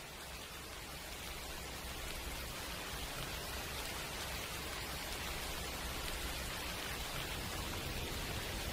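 Steady rain falling, an even hiss that grows louder over the first few seconds and then holds.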